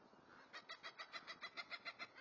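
A bird's rapid chattering call: a quick run of short, evenly spaced notes, about seven a second, starting about half a second in.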